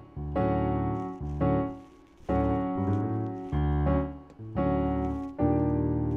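Electronic keyboard playing a slow run of major-seventh chords, about six in all, each struck and left to ring and fade before the next.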